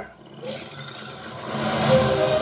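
Movie-trailer sound design: a rushing whoosh that builds over about a second and a half and peaks at the cut to the title card.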